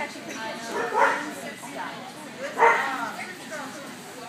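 Standard poodle barking twice, once about a second in and again, slightly louder, under two seconds later, over murmuring voices.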